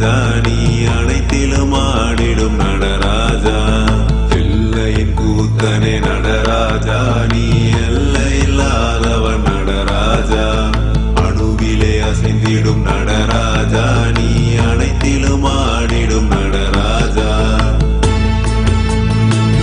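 Devotional music: a mantra sung by voices over a steady low drone.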